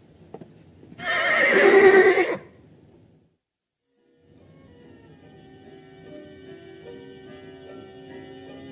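A horse whinnies once, loudly, for about a second and a half. After a short silence, quiet background music begins about four seconds in.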